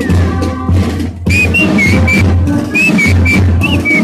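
Marching drums and fifes playing a march: a steady drumbeat, with a high, shrill fife melody coming in about a second in.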